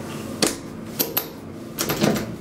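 Sharp clicks of the square push buttons on a DEVE hydraulic elevator's car control panel being pressed: one about half a second in, two in quick succession about a second in, and a couple more near the end.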